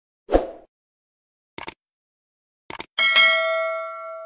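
Subscribe-button animation sound effects: a soft thump, two quick double clicks about a second apart, then a bright bell ding about three seconds in that rings on and fades.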